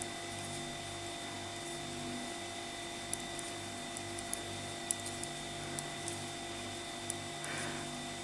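Faint, irregular clicks of metal knitting needles as purl stitches are worked. They sit over a steady electrical hum with a low tone that pulses about twice a second.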